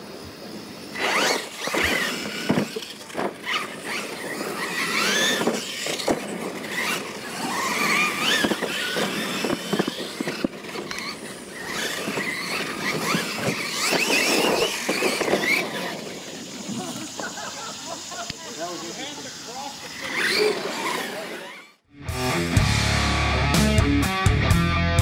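Brushless electric Losi LMT radio-controlled monster trucks racing on dirt: high-pitched motor and gear whine rising and falling as they accelerate, with sharp knocks between and voices in the background. About two seconds before the end the sound cuts off and loud music with a heavy beat starts.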